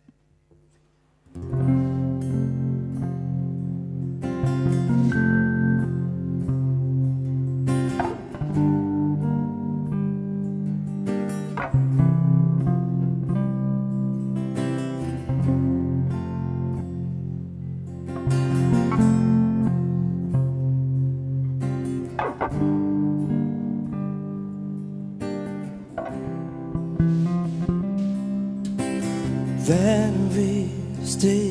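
Live band beginning an instrumental introduction about a second and a half in: electric bass carrying the song's usual piano part over strummed acoustic guitar, in a repeating phrase.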